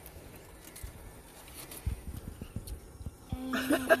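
A person chewing a bite of chicken wing: a few soft knocks and mouth sounds about two seconds in, then rapid bursts of laughter near the end.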